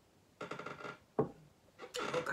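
A chair creaking for about half a second as the sitter shifts her weight, then a single sharp knock a little over a second in.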